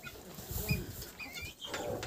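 Flock of chickens making faint, scattered short clucks and chirps.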